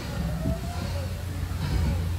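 Low, steady rumble and hum of the tour boat's motor running, with a faint whistling glide about half a second in.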